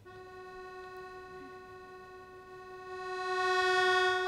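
Accordion holding one long, steady reed note rich in overtones, entering suddenly and swelling louder over the last second or so.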